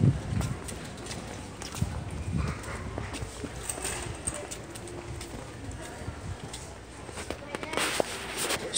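Store background noise with faint voices, broken by irregular knocks and clicks from handling a camera while walking through the aisles. The heaviest knocks come at the start and about two seconds in.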